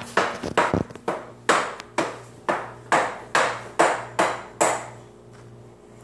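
Repeated sharp knocks on a baby walker's hard plastic tray, about three a second with a short ring after each, stopping a little before the end.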